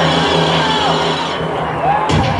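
A loud, sustained low electronic drone through a live band's PA, a steady hum of held low notes with a few higher tones gliding down over it, the high hiss thinning out about a second and a half in.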